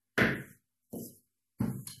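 Wooden rolling pin thunking against a floured table while dough is rolled out: three dull knocks about two-thirds of a second apart.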